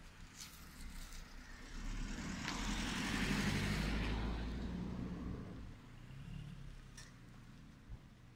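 A car driving past on an asphalt street, its engine and tyre noise swelling to a peak about three seconds in and fading away by about five and a half seconds.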